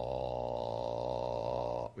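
A man's voice holding one very deep, steady "ah" note for nearly two seconds, then cutting off sharply. The low note is sounded to show sound as a rapid alternation of pulse and silence.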